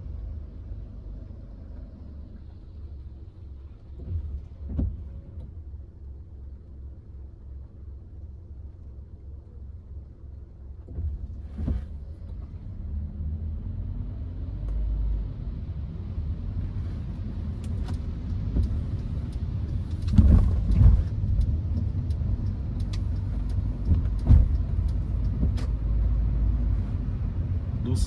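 Cabin noise of a Hyundai HB20 1.6 automatic's four-cylinder engine and tyres, creeping in stop-and-go traffic. A low rumble rises in pitch about halfway through as the car pulls away, then grows louder, with a few thumps from the road, the loudest about two thirds of the way in.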